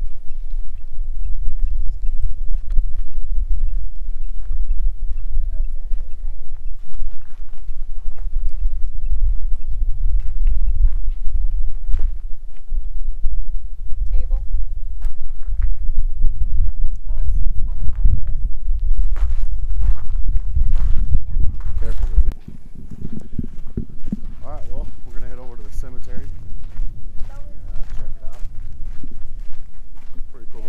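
Wind buffeting the microphone: a heavy low rumble with scattered crunching steps on gravel, which drops away sharply about two-thirds of the way through. Indistinct voices follow.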